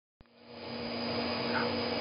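Steady hum and hiss of machinery in a plant room, holding one low tone. It fades in over the first second after a faint click at the very start.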